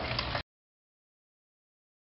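Dead silence: a short tail of room noise with a faint click cuts off abruptly less than half a second in, and nothing at all is heard after it.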